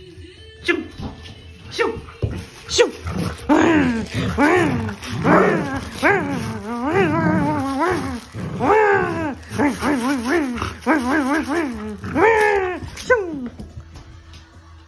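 Border collie vocalizing during tug play: a run of short grumbling, whining calls that rise and fall and sometimes waver, about a dozen in a row. A few soft knocks and rustles of the toy come before them.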